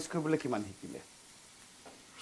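A man's voice trails off in the first second, then food frying in a pan on the stove, a faint steady sizzle with a spatula stirring.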